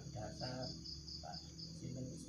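An insect chirping in a steady run of short, high-pitched pulses, about five a second, with brief faint voice sounds at the start.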